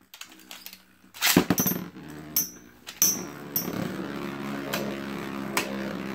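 Beyblade spinning tops in a plastic stadium. A sharp clack about a second and a half in as the second top is launched is followed by a steady whirring hum from the two tops, with a few light clicks.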